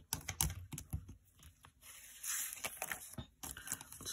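Paper planner inserts being slid onto the metal rings of a ring-bound planner and pressed flat by hand: a run of light clicks and taps, with a short swish of sliding paper about two seconds in.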